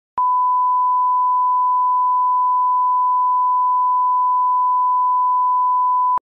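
A steady pure test tone at a single pitch and level, the line-up reference tone placed at the head of a recording, starting with a click just after the beginning.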